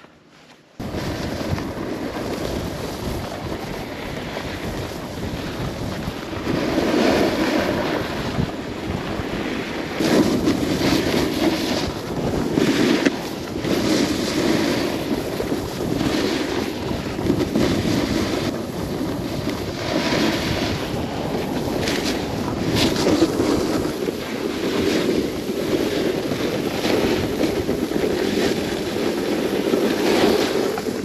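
Wind rushing over the microphone during a fast descent on a piste, with edges carving and scraping on packed snow. It starts abruptly about a second in, then swells with each turn every couple of seconds.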